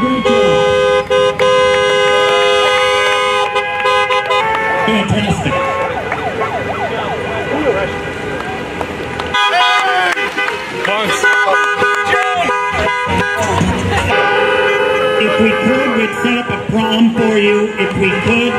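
Car horns honking in long held blasts, cutting off about four seconds in and starting again near the end, with people cheering and shouting in between.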